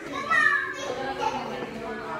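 A brief high-pitched vocal sound from a woman, falling in pitch, within the first second, then fainter chatter.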